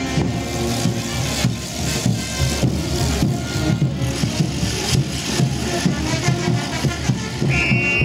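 Brass band playing morenada music with a steady drum beat.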